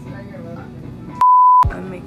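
Censor bleep: a single steady beep of under half a second, a little over a second in, with all other sound blanked out beneath it. Background music runs around it.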